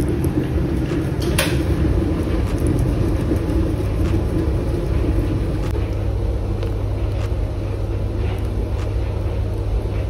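A steady low mechanical rumble, with one sharp click about a second and a half in.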